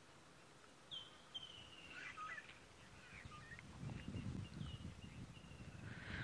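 Faint, high whistled bird calls: a short call about a second in, then a longer, slightly falling whistle, then a couple more short calls near the end. A low rumble grows in the second half.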